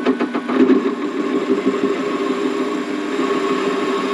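Warco WM180 mini lathe running under cut, its tool turning down aluminium stock: a steady mechanical drone with a rough cutting edge, with a few short clicks in the first half second.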